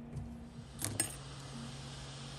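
Two quick metallic clinks about a second in, then the steady hiss and low hum of a hot-air rework station's air flow, used to desolder the RF connector on the M.2 LTE card.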